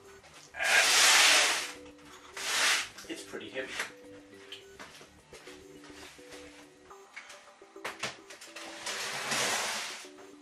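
Background plucked-guitar music runs under loud bursts of rustling and scraping: clothing brushing close past the microphone about a second in, and a heavy battery pack being handled and slid onto a metal shelf near the end.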